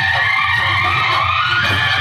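Loud music played through a truck-mounted array of horn loudspeakers: a steady bass under a siren-like tone that glides down and then rises again about half a second in.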